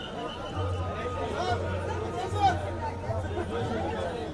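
Indistinct chatter of several voices, with one voice briefly louder about halfway through.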